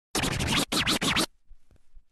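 DJ-style record-scratch sound effect: three quick, loud bursts of scratchy noise that sweep down and back up in pitch, lasting about a second before dropping away.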